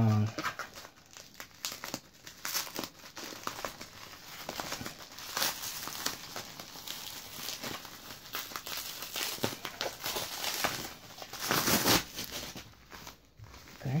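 Plastic packaging crinkling and tearing as a wrapped parcel is pulled open by hand, in irregular crackles, with a louder burst of rustling about eleven seconds in.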